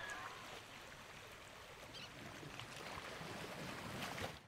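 Faint wash of sea surf running up over sand, growing a little louder toward the end.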